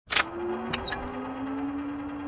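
Record player with a vinyl record spinning: a sharp click at the start and two fainter clicks a little under a second in, as the needle is set down, over a low held tone that slowly rises in pitch.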